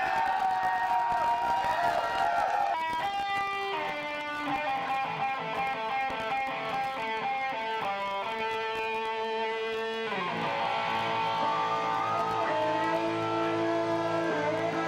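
Electric guitar playing live in a stoner rock set: held notes at first, a run of single picked notes from about three seconds in, then sustained notes again from about ten seconds in.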